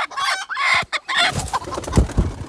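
Broody hen clucking as a hand pushes her off her eggs, a run of short calls, then low rustling and a bump near the end as she is moved.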